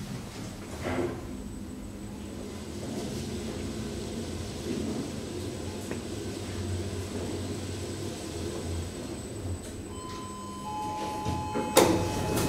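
Schindler 5400 machine-room-less traction elevator car travelling, a steady low hum with a faint thin high whine. About ten seconds in comes a two-tone electronic arrival chime, and near the end a knock as the doors begin to open.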